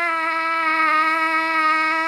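A man singing one long, steady high note with no accompaniment.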